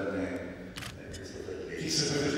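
A man talking into a microphone over the hall's sound system, with one short, sharp click a little under a second in.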